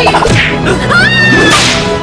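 Edited sound effects over background music: a whip-like swish and a high whistle-like tone that rises about a second in and then holds.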